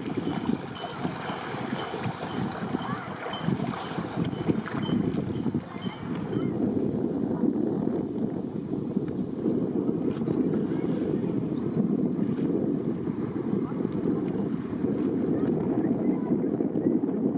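Outboard motor of a rigid inflatable boat running as the boat comes closer, mixed with wind buffeting the microphone; the sound grows a little stronger from about six seconds in.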